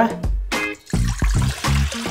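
Background music, with water being poured from a glass jug into a stainless steel mixing bowl.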